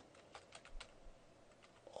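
Faint computer keyboard typing: a handful of separate keystrokes as a word is typed.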